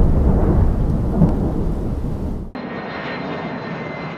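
A deep rumble fades away over the first two and a half seconds. It cuts sharply to a thinner, steady jet-aircraft sound effect with a faint high whine, which stops just after the end.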